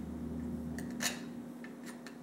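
Handmade spring-tempered steel broach scraping in and out of the hidden-tang slot in a walnut handle block: three short scratchy strokes as it cuts wood out of the slot.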